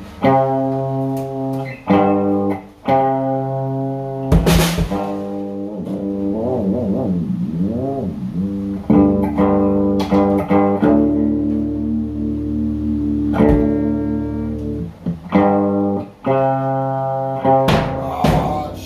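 Electric guitar played through an amplifier: held chords changing about once a second, with bent, wavering notes about a third of the way in. A few cymbal crashes from a drum kit cut in, one a few seconds in, one past the middle and one near the end.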